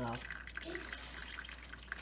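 A thin stream of red cabbage juice trickling into a plastic bucket of the same dark liquid, a faint steady pour.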